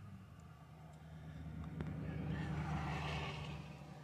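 Faint passing vehicle: a rushing sound that swells from about a second in, peaks near three seconds and fades, over a low steady hum.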